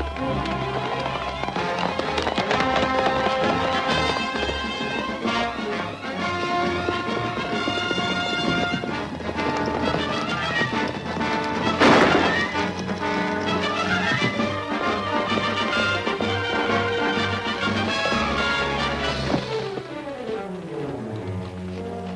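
Orchestral film score playing loud action music, with sliding string runs; a sharp, loud hit cuts through about halfway.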